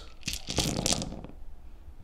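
A handful of about eighteen six-sided dice thrown onto a tabletop gaming mat: a dense clatter of clicks lasting about a second that dies away.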